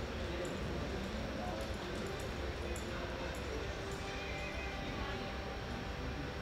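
Indoor arena ambience: a steady low rumble with a murmur of distant voices, and faint scattered clicks in the first few seconds.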